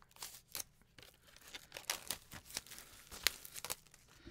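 Plastic shrink-wrap being torn and crinkled off a CD case: an irregular run of crackles and small rips, with one sharper snap a little after three seconds in.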